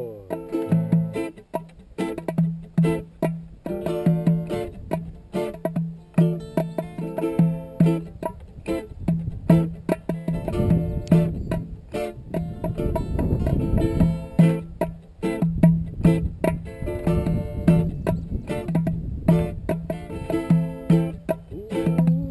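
Acoustic roots reggae played on strummed acoustic guitars and a small stringed instrument, with an even rhythm of short, chopped strums over a repeated low note. A low rumble rises under the music for a few seconds near the middle.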